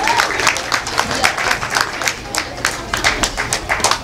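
Audience applauding: many hands clapping at once in a dense, irregular patter that holds steady throughout.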